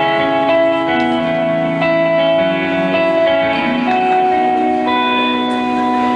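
Live band playing a slow instrumental introduction, led by electric guitar: long held, ringing notes and chords that change every second or two.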